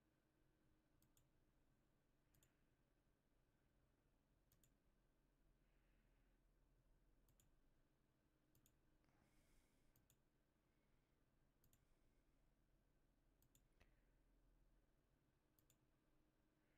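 Near silence, with faint computer mouse clicks every second or two.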